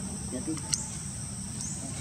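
Insects chirring steadily in a high-pitched drone, with a single sharp click a little under a second in.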